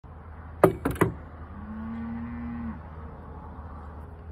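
Three sharp cracks in quick succession, then a cow mooing once: a steady low call lasting about a second that drops in pitch as it ends.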